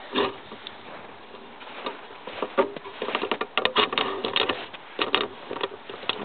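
Footsteps crunching on snow, irregular and quicker in the second half.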